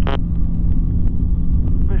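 Flexwing microlight's engine and propeller droning steadily at cruise, heard through the headset intercom over the radio. A brief radio squelch burst comes right at the start as a tower transmission ends.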